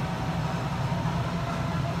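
A steady low hum with faint hiss and no distinct events: background room noise in a pause between spoken phrases.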